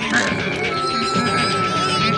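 Cartoon background music, with a held high note coming in partway through, under the strained, whining vocal noises of animated characters straining against each other.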